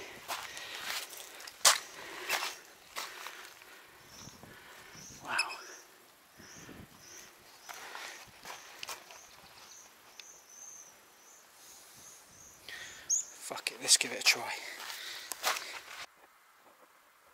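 Footsteps crunching on a pebble and shingle shore, uneven, with a few louder knocks. Through the middle a high chirp repeats about twice a second.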